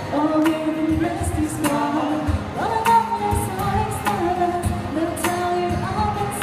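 A woman singing live into a microphone, holding long notes, accompanied by a strummed acoustic guitar.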